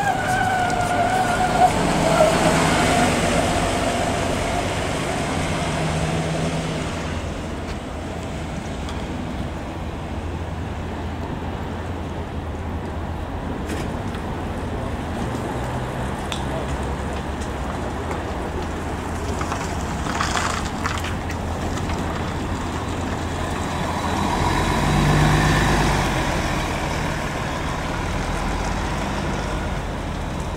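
Articulated city diesel buses passing. A Mercedes-Benz Citaro goes by close at the start with a falling whine over its engine, and later an articulated Volvo bus approaches and pulls away, its engine rising near the end. A short hiss comes about two-thirds of the way through.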